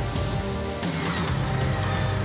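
Opening theme music with sustained tones under a hissing layer of sound effects, and a falling sweep about a second in.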